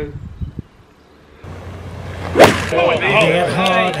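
A golf ball struck cleanly by a club in a televised tournament clip: one sharp crack about two and a half seconds in, the loudest sound here.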